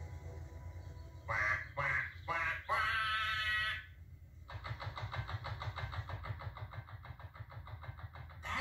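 Narrowboat engine chugging steadily, heard through a television speaker. About a second and a half in come four short quacking calls, the last one longer. A fast, regular put-put from the engine follows.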